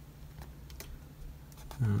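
A few light clicks and taps from a hard clear plastic display case being handled and turned over in the hands, over a low steady hum.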